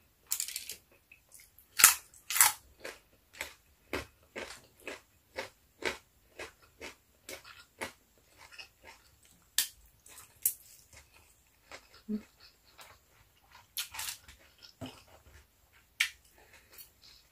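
Close-miked chewing and lip smacking of a person eating braised pork belly with rice by hand: an irregular run of short, sharp wet clicks, about two or three a second.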